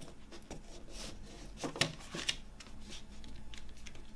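A paper CD booklet being slid back into a clear plastic jewel case: paper rubbing on plastic, with a few sharp clicks and taps of the case near the middle.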